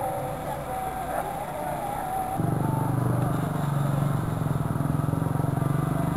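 Faint outdoor voices at first. About two seconds in, a small engine idling comes in abruptly and runs on as a steady, even low hum.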